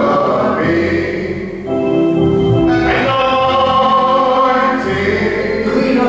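Group of voices singing a gospel worship song, with long held notes.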